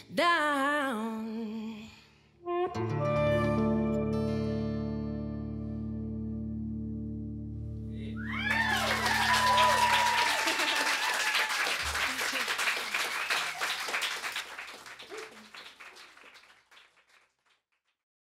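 A last held sung note with vibrato, then a final acoustic guitar chord ringing out for several seconds. Audience applause and whoops break in about eight seconds in and fade away near the end.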